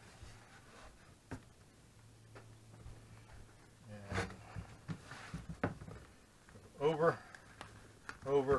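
Faint rustling and a few soft knocks as a stiff piece of leather is folded and pressed around an axe head on a workbench, with a brief bit of voice near the end.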